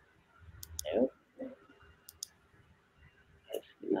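Computer mouse clicking: two quick pairs of sharp, high clicks about a second and a half apart.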